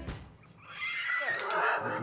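A person's voice, pitched and gliding, starting about a second in after a short lull.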